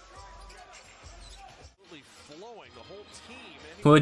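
Basketball being dribbled on a hardwood court in an arena broadcast, with a light repeated bounce under crowd noise. After a short dropout about halfway through, a man's voice comes in faintly.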